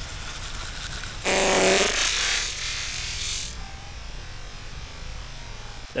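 Teeth being scrubbed with a manual toothbrush: a scratchy, hissing brushing noise that swells a little over a second in and fades out about two seconds later, with a short muffled hum from the brusher as it starts.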